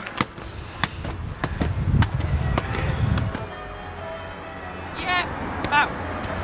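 A football kept up with repeated foot and knee touches, a sharp tap about every half second to second. A low rumble passes in the middle, and short falling chirps come near the end.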